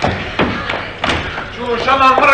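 Three dull thuds in the first second or so, as of knocks or steps on a theatre stage, with actors' voices coming in near the end.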